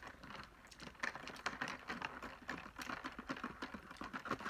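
Handling of a cardboard fast-food box: a quick, irregular run of small taps, clicks and scrapes.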